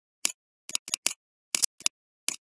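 Computer mouse clicking: a quick, uneven run of about eight sharp clicks, some in close pairs.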